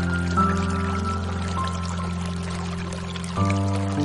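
Slow, soft piano music with long held chords, a new chord struck about half a second in and another near the end, over a steady sound of running water.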